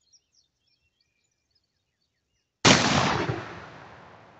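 A single shot from an H&R Topper 10-gauge single-shot shotgun with a 3½-inch chamber and full choke, about two and a half seconds in, its report rolling away and fading over the next couple of seconds.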